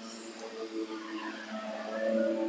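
Faint drone of a lawn mower engine running some way off: a few steady hum tones that drift slightly in pitch.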